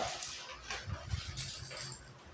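A thin plastic bag rustling and crinkling as it is lifted and rummaged through, in short irregular crackles.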